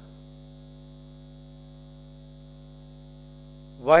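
Steady electrical mains hum, an even unchanging drone. A man's voice starts again just before the end.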